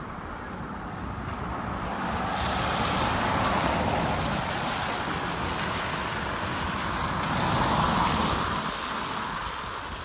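Cars passing on a wet road, their tyre noise swelling and fading twice as the traffic goes by.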